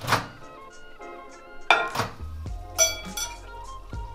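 Background music, with a few sharp clunks and clinks as a ceramic bowl is handled and a microwave door is opened.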